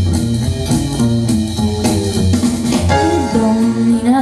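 Instrumental introduction of a swing jazz backing track: chords over a repeating low bass pulse with a drum kit keeping time, just before the vocal comes in.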